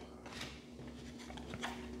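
Tarot cards handled and laid down on a cloth-covered table: a faint rustle with a few soft taps.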